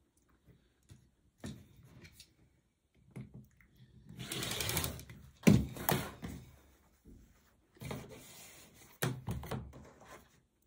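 Acrylic quilting ruler and fabric strip sets handled on a cutting mat: sliding and rustling in two stretches, with a sharp knock about five and a half seconds in and a few lighter clicks.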